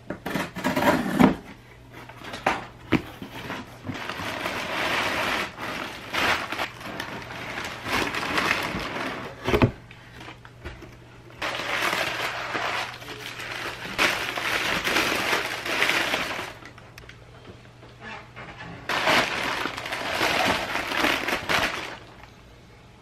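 A few knocks as a cardboard box is handled and opened, then white packing paper crinkling and rustling in three long stretches as it is pulled out and unwrapped from a ceramic bowl.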